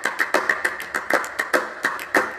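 A fast run of light clicks or ticks, about six a second, as in a rhythmic ticking sound.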